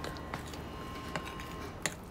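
Metal spoon stirring thick batter in a ceramic bowl, with a few light clicks as it knocks against the bowl, over a faint steady tone.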